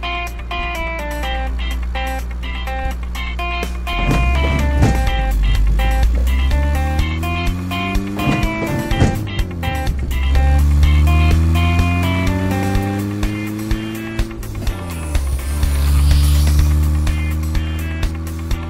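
Background music over cartoon vehicle engine sound effects: a low engine rumble that revs up in pitch three times, each rise lasting a few seconds.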